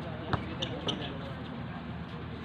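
A basketball bouncing on a hard outdoor court: one sharp thud about a third of a second in, followed by a few fainter ticks, under faint distant voices.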